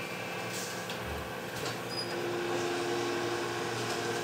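Steady hum of record-pressing machinery in a pressing plant, with a few faint clicks and a low thump about a second in.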